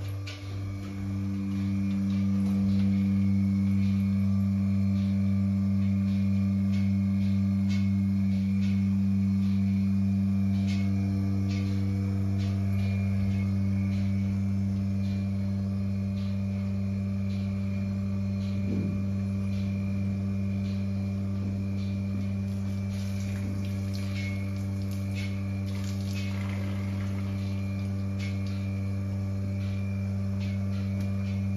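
Portable bucket milking machine running: a steady, loud hum from its vacuum pump, with faint scattered clicks over it.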